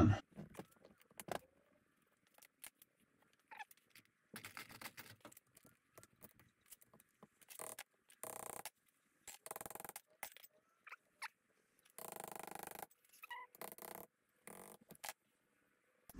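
Faint clicks and short scrapes of steel tools and parts as a small bolt is taken out of a VW front spindle assembly clamped in a bench vise. The sound is intermittent, with a few longer scrapes lasting about a second in the second half.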